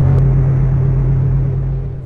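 A steady low synthesized drone with a rumble beneath it, the sustained end of a falling sound-effect sweep in an animated logo intro. It fades slightly near the end.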